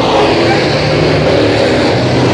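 Several dirt-track Sportsman late models with GM 602 crate V8 engines running hard past the grandstand, side by side: a loud, steady drone of several engines at once.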